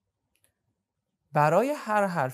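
Near silence for just over a second. Then a man's voice comes in loudly with a drawn-out, pitch-bending vocal sound.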